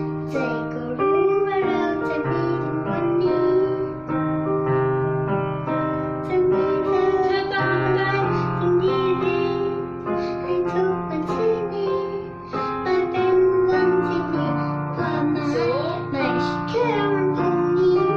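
A young girl singing a Thai song with piano accompaniment, her voice gliding and wavering on long held notes over sustained keyboard chords.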